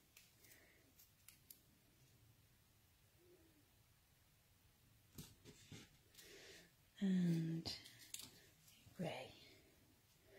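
Faint clicks and taps of thin cardstock strips being handled and laid down on acetate, with a few short murmured words a little after seven seconds in.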